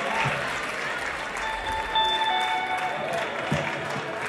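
Audience applauding, with a steady held instrument tone from the stage through the middle.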